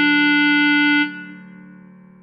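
A clarinet holds one long note, a written E that sounds as D, over a backing track. About a second in the clarinet stops and the backing fades away.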